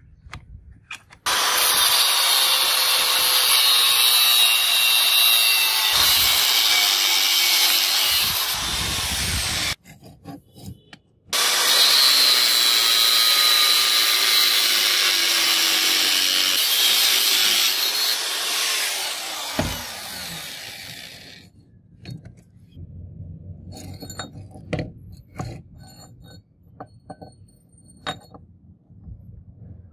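Angle grinder with a cut-off disc cutting through a rusty steel ball bearing, in two long cuts separated by a brief pause. The second cut fades out near the end, followed by scattered light clicks of metal pieces being handled.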